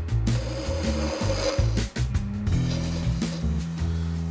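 A skewchigouge taking a light cut on a spindle spinning in a wood lathe, a continuous scraping and shaving sound with the lathe running, under background music.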